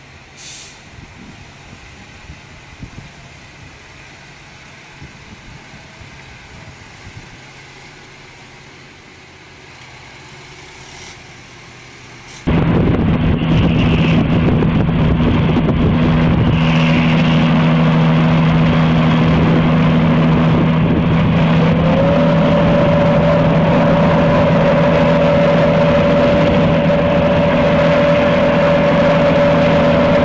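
A quieter, even rushing noise, then an abrupt cut about twelve seconds in to a loud truck engine droning steadily as a tanker road train drives through flood water. Around ten seconds later one tone of the drone rises in pitch and then holds.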